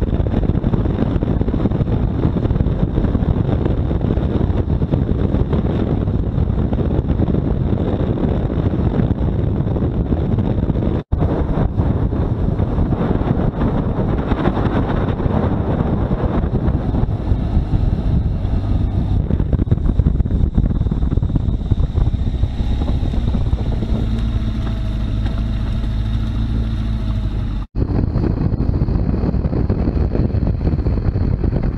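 Wind rushing over the microphone and the road and engine noise of a motorcycle ridden at speed, steady throughout. The engine's hum shows more clearly for a few seconds near the end. The sound drops out briefly twice at cuts.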